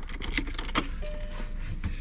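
Car key ring jangling, with sharp clicks as the key goes into the ignition of a 2013 VW Passat and is turned. A faint steady tone comes in about halfway through as the ignition comes on.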